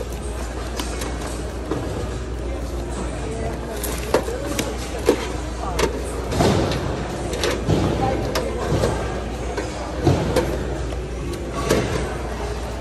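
Hands rummaging through a bin of donated goods: a run of sharp knocks and clicks as hard plastic items are moved and bumped against each other, starting about four seconds in, over a steady low hum and the talk of other people in the store.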